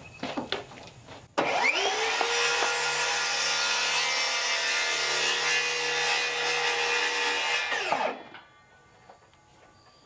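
Circular saw spinning up about a second and a half in, running steadily for about six seconds as it cuts through wooden porch decking planks, then winding down.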